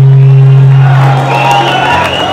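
A live band's final low note, very loud and held steady, dies away about a second in as the audience starts cheering and shouting.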